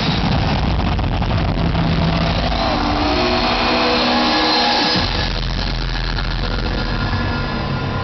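Intro soundtrack playing loudly over an arena sound system: a deep bass rumble under held synth tones, with the bass dropping away for a moment just before five seconds in and then coming back strongly.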